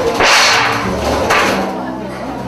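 Loud dance music with a steady bass line and two sharp, ringing percussion hits about a second apart.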